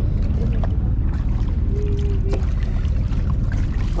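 A boat under way on the water: a steady low rumble of engine, wind and water noise.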